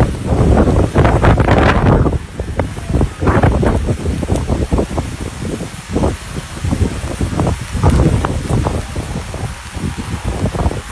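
Strong typhoon wind buffeting the microphone. It is heaviest for the first two seconds, then comes in uneven gusts.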